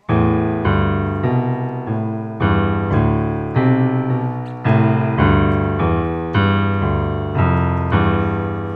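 Casio electronic keyboard with a piano sound playing a slow run of low notes, about two a second, each struck and left to die away, the last one held; it sounds almost like groaning. The notes are a cold lake's water temperatures turned into pitch, one note per degree.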